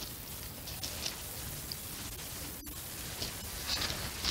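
Faint rustling and a few light ticks as fingers work wet acrylic paint along the side of a canvas resting on plastic sheeting, over a steady low hiss.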